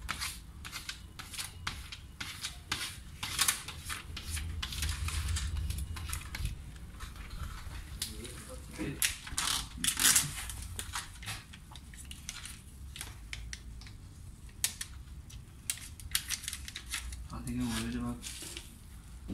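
Plastic window tint film being worked onto car window glass: irregular scrapes, crinkles and crackles from a squeegee card and fingers on the film, loudest a few seconds in and again about ten seconds in.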